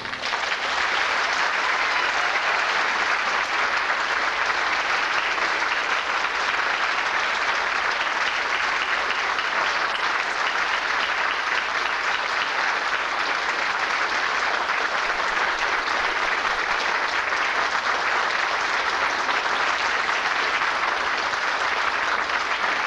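Audience applauding, a dense, steady clapping that keeps an even level throughout.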